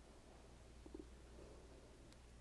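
Near silence: room tone with a faint low hum and a tiny tick or two about a second in.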